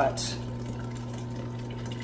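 Brewery recirculation pump humming steadily as it moves wort through a thick mash, with liquid running back into the mash tun from the return hose. The pump is running well, not clogged by the grain.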